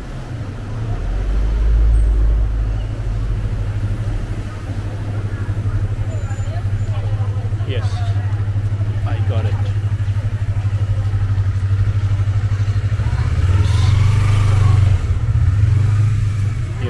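Street traffic noise: a steady low hum of vehicles, with a louder vehicle passing about two seconds in, and faint voices of people nearby.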